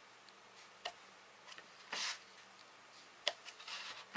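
A few light clicks and taps from a clear stamp on its acrylic block being pressed onto paper and handled at an ink pad. There is a short scuff about halfway through and a little cluster of taps near the end.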